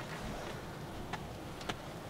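Quiet steady background noise with three faint, sharp clicks spread through it.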